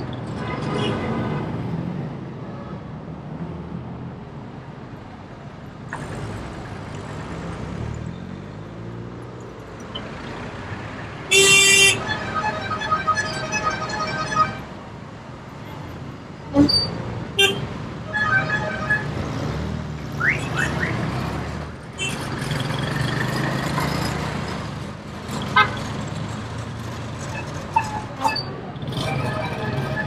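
Busy city street traffic heard from a moving vehicle, with car horns honking repeatedly. The loudest is a long horn blast about eleven seconds in, followed by a run of short beeps.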